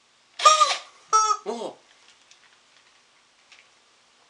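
Rubber chicken squeezed twice: two short, loud squawks close together, the second sliding down in pitch as it ends, followed by a few faint clicks.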